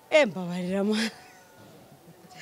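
A woman's single high-pitched laughing cry: it drops quickly in pitch, then holds a steady note and stops about a second in.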